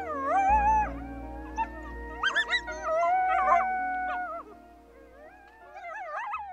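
Coyotes howling: several long, wavering howls overlap, with quick bursts of yipping in the middle. The chorus fades after about four and a half seconds, and another howl starts near the end, all over background music.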